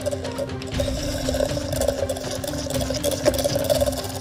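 Handheld electric milk frother whirring steadily in a jug of warm milk, whipping it back up to a foam, over background music.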